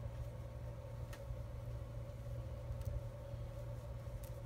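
Steady low background hum with a couple of faint metallic clicks as jewelry pliers work a small jump ring and lobster clasp.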